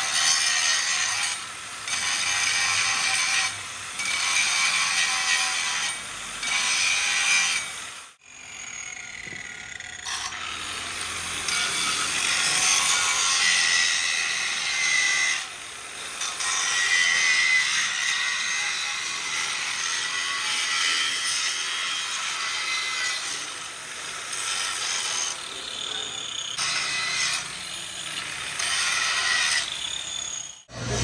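Hand-held angle grinder with an abrasive disc grinding a steel excavator bucket tooth: a high whine over a grinding hiss, in passes of about two seconds with brief let-ups. It breaks off sharply about eight seconds in, then resumes in a longer, steadier run.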